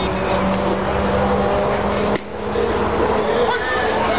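Background ballpark ambience: people talking indistinctly over a steady low hum, with a brief dip in the sound about two seconds in.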